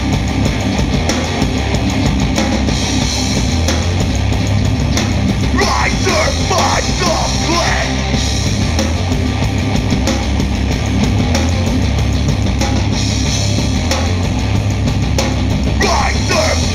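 Hardcore punk band playing live at full volume: distorted electric guitars, bass and drums, with bursts of shouted vocals about six seconds in and again at the very end.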